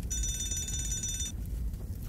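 A bell rings with a fast, even clatter for just over a second, then stops, over a low rumble.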